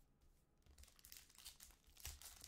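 Faint crinkling and tearing of a foil trading-card pack being handled and torn open, starting just under a second in.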